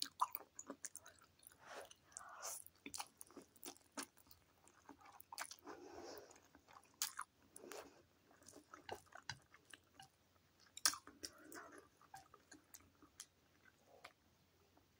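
Close-miked chewing of a mouthful of noodles: irregular wet mouth clicks and smacks, with a few longer soft stretches of chewing.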